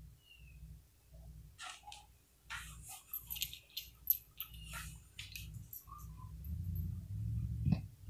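Faint rustling and a scatter of small clicks from a hand digging in a jeans pocket to fish out revolver cartridges.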